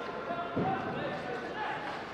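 Indoor ice hockey rink during play: voices of players and spectators calling out over the rink's steady background noise, with a dull knock about half a second in.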